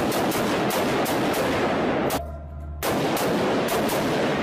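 Rifle fire in a concrete-walled range bay: rapid shots, several a second, each echoing into the next, with a short break a little past two seconds in.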